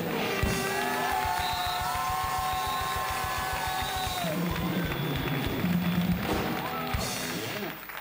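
Live band music led by a drum kit playing a fast, steady beat under held higher notes, stopping shortly before the end.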